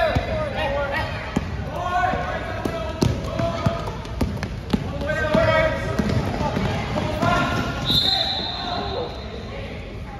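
A basketball bouncing on an indoor gym court in irregular knocks, with players and spectators calling out and the sound echoing in the hall. Near the end a referee's whistle blows once for about a second.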